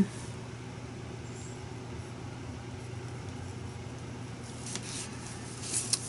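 Steady low hum under a faint even hiss: room tone, with a couple of faint ticks near the end.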